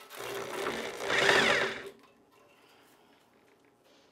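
Cordless drill spinning a grain mill's rollers for about two seconds, the motor pitch rising as it speeds up, then stopping.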